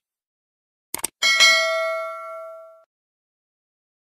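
Subscribe-button animation sound effect: a quick double mouse click about a second in, then a bright notification-bell ding that rings for about a second and a half and fades away.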